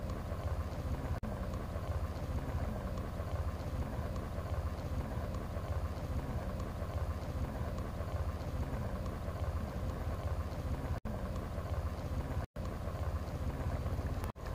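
Steady low rumble of wind buffeting the microphone. It drops out for a moment three times.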